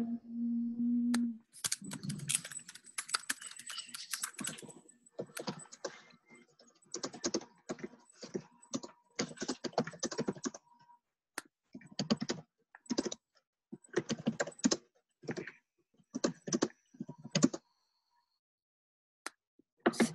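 Typing and clicking on a computer keyboard in irregular runs of keystrokes, stopping shortly before the end.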